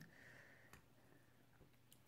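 Near silence: quiet room tone with two faint clicks.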